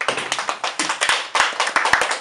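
A few people clapping by hand, quick uneven claps several times a second, starting abruptly.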